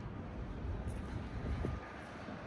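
Steady outdoor street noise with a low rumble of distant traffic.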